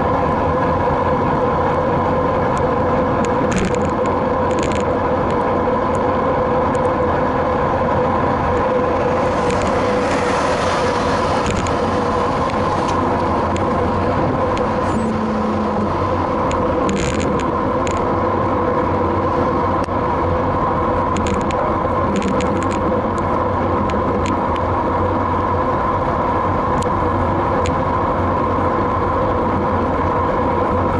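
Steady rush of wind and road noise on a bicycle-mounted camera while riding, with a constant hum underneath and a few faint clicks.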